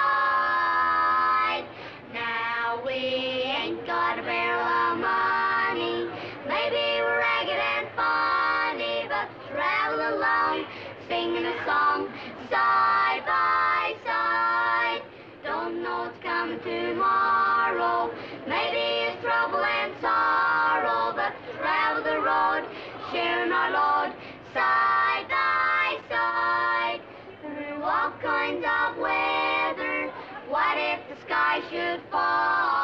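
Four boys singing a song together as a barbershop-style quartet, in four-part harmony (bass, baritone, tenor and lead), phrase after phrase with short breaths between.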